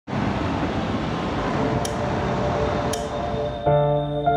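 A steady rushing noise with two faint, bright clinks partway through. Just before the end it gives way to soft ambient music of sustained, chiming notes.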